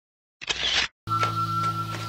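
Dead silence, broken about half a second in by a short camera-shutter sound effect; background music with sustained tones starts at about one second.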